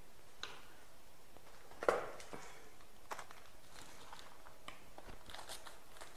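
Faint, scattered clicks and small knocks of handling on a table, with one louder knock about two seconds in.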